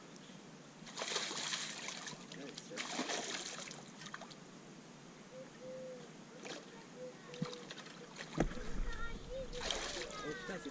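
Water splashing in several separate bursts as a hooked carp thrashes at the surface, tiring on the line.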